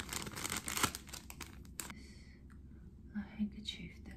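Thin plastic packaging sleeve crinkling and rustling as a cloth handkerchief is pulled out of it, in a quick run of rustles over the first two seconds. A soft, whispered voice follows near the end.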